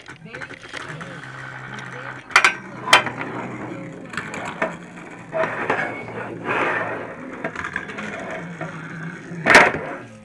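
Beyblade spinning tops and their plastic gear clattering and ratcheting on a tabletop. There are sharp knocks a couple of seconds in and a louder knock near the end.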